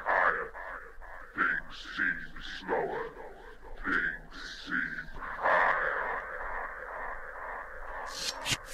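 Beatless breakdown in a minimal techno DJ mix: short, filtered, voice-like fragments that sound thin and narrow, with no drums. About five and a half seconds in, a steadier hiss-like swell takes over.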